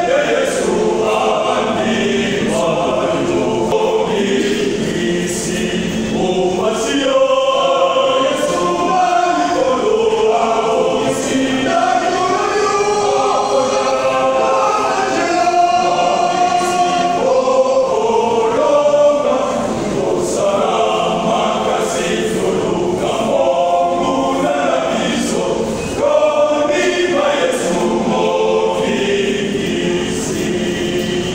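Men's choir singing a sacred song in harmony, with long held notes.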